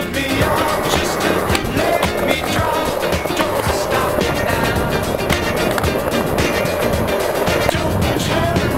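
Skateboard wheels rolling over a rough court surface, with repeated sharp clacks of the board, mixed with music.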